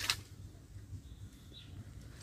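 Quiet outdoor background: a short hiss at the very start, then only a faint low rumble.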